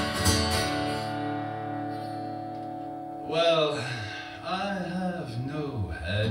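Acoustic guitar strummed in the opening half-second, then a chord left ringing. From about halfway through, a man's voice sings over it with wavering, sliding pitch.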